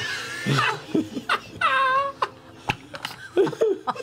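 A group of people laughing together, with a high-pitched squealing voice about a second and a half in and a few short sharp clicks.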